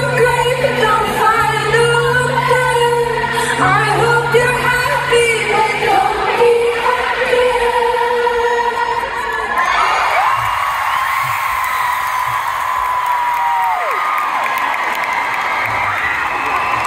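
A woman sings a slow pop song live to acoustic guitar, heard from within a large arena crowd. About ten seconds in the song ends and the crowd cheers and whoops, with one long held call that slides down.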